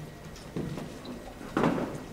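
People moving about on a stage, with faint footsteps and handling noises over a low steady room hum. One louder short sound comes about one and a half seconds in.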